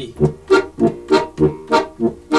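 Diatonic button accordion playing a detached off-beat accompaniment in Austrian folk style: short, separate bass and chord stabs, about three a second.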